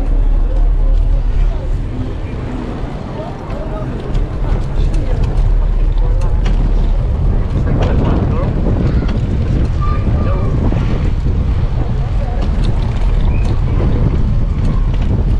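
Wind buffeting the microphone, a heavy steady rumble throughout, with faint voices in the background.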